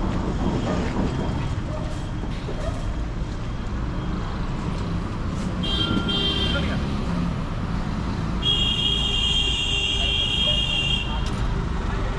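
Steady low rumble of vehicle engines and road traffic, with a short high-pitched horn toot about six seconds in and a longer, steady horn blast of about two and a half seconds near the end.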